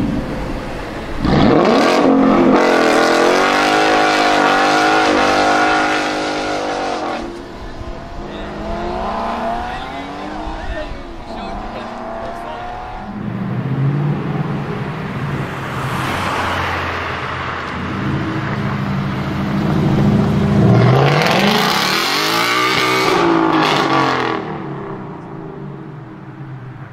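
Ford Mustang V8 engines in several short clips: first a Mustang GT revving hard in repeated surges while spinning its rear tyres in a burnout, then Mustangs driving past with a low steady engine note. A loud rising acceleration a few seconds before the end fades as the car pulls away.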